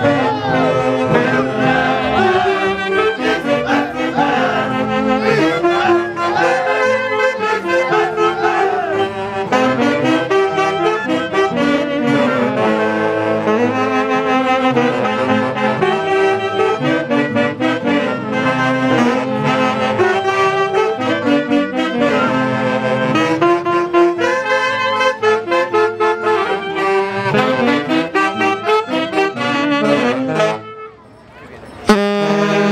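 Chonguinada dance music played live by a band led by saxophones with brass, a steady, lively tune with an even dance beat.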